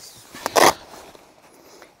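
A short rustling scrape about half a second in, then faint rustling: a person kneeling down on the ground, trousers and knees brushing the grass and soil.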